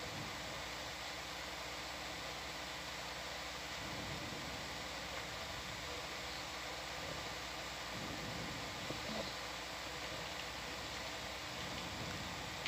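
Steady hiss with a faint low hum: background room tone of the ROV live audio feed, with no distinct sound events.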